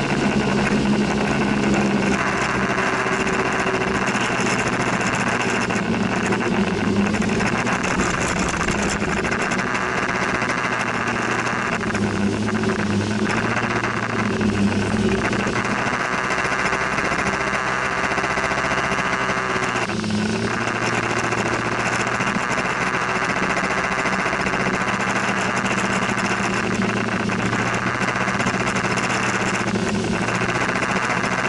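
Motor scooter engine running as it rides through traffic, its note changing with the throttle several times, over a steady hiss of wind and road noise.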